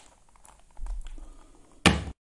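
A large 4x4 mirror cube handled in the hands, with a few faint clicks and a low rub, then one sharp knock near the end as it is set down on a wooden table.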